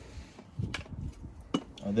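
Hard plastic door trim of a MINI being handled, giving a couple of short sharp clicks about a second apart over low handling rumble.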